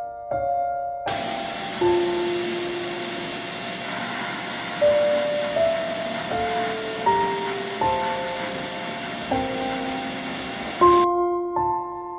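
Vacuum cleaner running on carpet: a steady rushing noise with a thin high tone. It starts about a second in and cuts off about a second before the end, under soft piano music.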